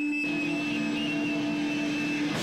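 Electric guitar feedback through an amplifier: one steady, unwavering ringing tone held before the band starts playing.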